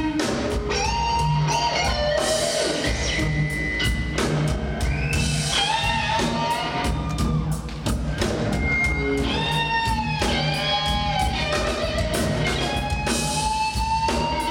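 Live electric blues guitar solo on a Stratocaster-style guitar, with held notes bent up and down in pitch, over a drum kit keeping time.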